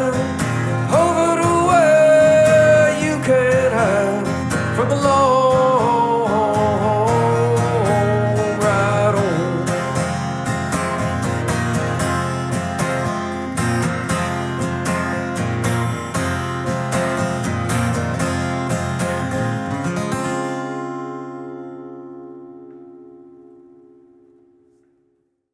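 Steel-string acoustic guitar strummed to close a song; about twenty seconds in the strumming stops and the last chord rings out, fading away.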